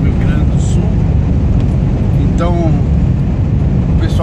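Steady low drone of a heavy truck's engine and tyres heard from inside the cab while cruising on the highway.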